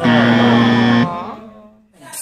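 A loud buzzing tone, held steady for about a second, then sliding down in pitch and fading out.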